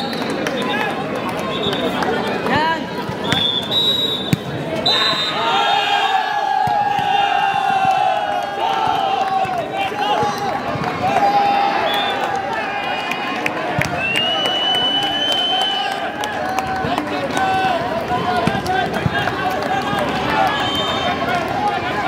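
Spectators at a volleyball match shouting and talking over one another, with short knocks of the ball being struck during play.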